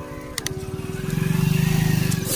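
A motorcycle engine running close by, its rapid firing pulses getting louder from about a second in. A couple of sharp clicks near the start as the phone is swung.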